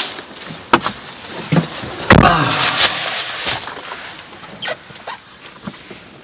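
Car door pulled shut with a heavy thump about two seconds in, a man's loud sigh falling in pitch right over it. Softer clicks and rustles come before it as someone settles into the seat.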